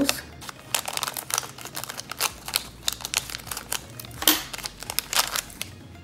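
Thin holographic plastic zip pouch crinkling as it is opened and handled to take out a small nail-art mixing plate, in a run of irregular crackles with a louder one about four seconds in.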